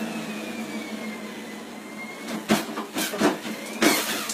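Treadmill running: a steady motor hum with a faint whine that sinks slowly in pitch, then rises again. A few thumps from about two and a half seconds in, and another near the end, as feet land on the moving belt.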